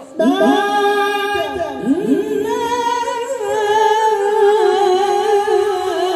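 Male voices singing sholawat unaccompanied into microphones. After a brief break at the start, the voices slide up and down in pitch, then settle into one long, wavering held note from about halfway.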